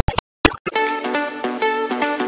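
Background music that breaks off into a brief silent gap with a couple of clicks at the very start, then resumes with steady melodic notes about half a second in.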